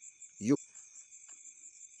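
Insects chirping steadily in the background with a high, rapidly pulsing trill and fainter steady tones below it. A man speaks one short word about half a second in.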